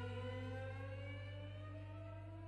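Bowed cellos: one sustained note glides slowly upward in pitch while fading away, over a steady low tone.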